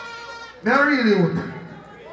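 A man's single drawn-out vocal call over the stage PA, starting about half a second in, rising in pitch and then sliding down over about a second.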